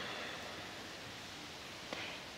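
Faint steady hiss of quiet background ambience, with no distinct sound event.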